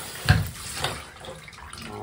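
Water from a handheld shower head running in a bathtub, fainter than a full spray, with a loud thump about a third of a second in and a lighter knock just under a second in.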